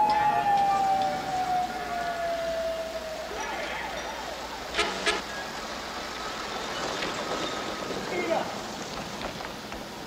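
Night street ambience on a film soundtrack: a long tone glides down and fades out about three seconds in. Two sharp knocks come close together about five seconds in, over a steady street background.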